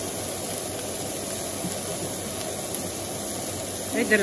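Sliced fennel cooking in a cast-iron pan on the hob: a steady, even hiss.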